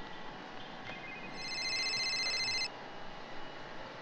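Mobile phone ringing: a single high, rapidly pulsing electronic ring starting about a second in and lasting about a second and a half.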